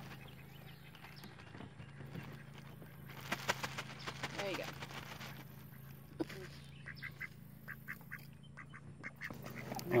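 Ducks quacking in short calls, with a quick run of them about seven seconds in, over a steady low hum.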